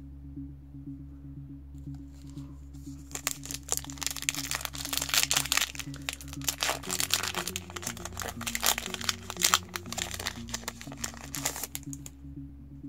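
Foil trading-card booster pack crinkling and tearing as hands open it. It starts about three seconds in and stops just before the end, over steady background music.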